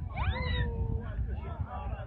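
A person's loud shouted call that sweeps sharply up in pitch and then holds level for about half a second, followed by talking, over a steady low wind rumble on the microphone.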